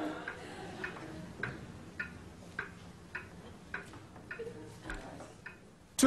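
Wall clock ticking faintly and steadily, a little under two ticks a second.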